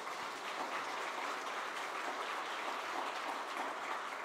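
A congregation applauding: a steady, fairly soft patter of many hands clapping, easing off slightly near the end.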